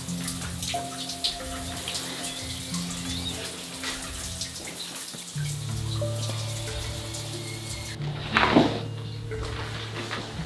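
Slow ambient background music of held, sustained chords that shift every couple of seconds, with a fine crackling, trickling noise of small clicks over it for the first eight seconds.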